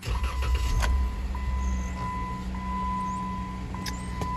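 2016 Jeep Wrangler's 3.6-litre V6 engine starting up and settling into a steady idle, heard from inside the cabin.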